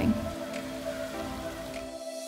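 Soft background music of held tones over the steady splash of a stone village fountain's running water.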